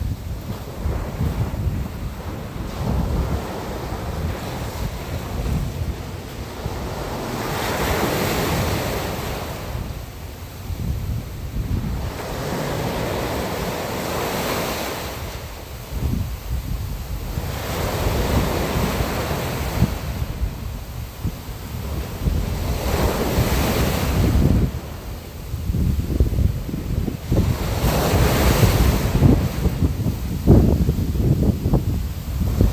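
Sea waves washing in and drawing back, swelling about every five seconds, over a steady low wind rumble.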